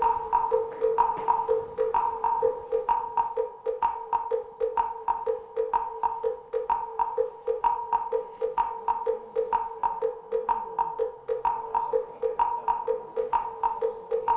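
Countdown timer music for a timed game round: a steady wood-block-like tick, a bit over two beats a second, alternating between a lower and a higher note.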